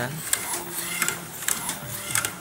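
DTF printer mechanism running, with a steady whir and several irregular sharp clicks.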